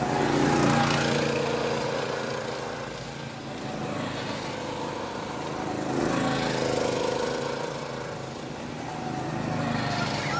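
Small go-kart engines running, getting louder and then fading twice as karts pass.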